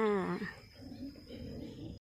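A woman's voice drawing out a final falling syllable, "kha", for about half a second, followed by faint low background sound.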